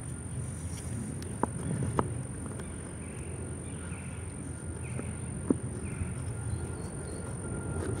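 A few sharp clicks, then a soft rasping about once a second as a seep willow spindle is spun back and forth on an incense cedar fireboard by a string drawn against a spring sapling: a bow-drill-style friction fire, already hot enough to smoke.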